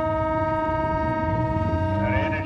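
A horn sounding one long, steady note at a single pitch, over the low running of race car engines.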